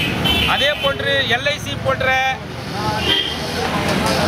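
A man speaking in Tamil into press microphones, over a low, steady rumble of road traffic.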